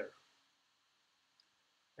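Near silence: quiet room tone after a spoken word dies away, with one faint short click about one and a half seconds in.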